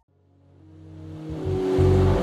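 Near silence for about half a second, then a soundtrack riser that swells steadily louder, with a sustained low bass tone under a growing hiss, building toward the next intro's drop.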